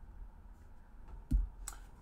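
A deck of tarot cards being set down on a wooden table: a dull thump about two-thirds of the way through, then a short sharp click.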